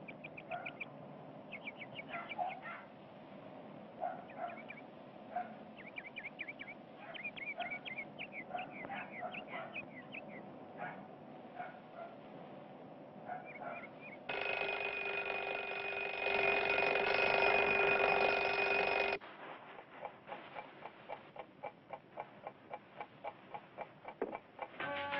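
Birds chirping in short repeated calls, with fowl-like clucks among them. After about fourteen seconds a loud steady drone of several held notes cuts in for about five seconds, jumping louder partway through, then gives way to a regular ticking about twice a second.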